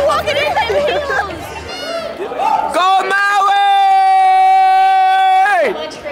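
Crowd voices and shouts, then one long high vocal note held steady for about three seconds before it slides down and stops.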